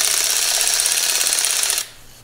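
Ratchet clicking in a fast, steady run as a piston ring compressor is tightened around a piston fitted with new rings. The clicking stops abruptly near the end.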